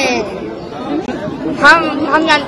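Only speech: people talking, softer in the middle and louder again near the end.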